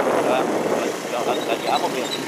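Steady running and road noise of a moving vehicle, with a man's voice sounding briefly a couple of times.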